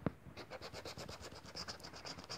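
Scratch-off lottery ticket (Premia 777) being scraped by hand: quick repeated scraping strokes rubbing off the latex coating, fairly faint.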